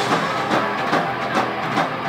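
Live heavy metal band playing loud distorted guitars and drums, with sharp accented hits about two or three times a second.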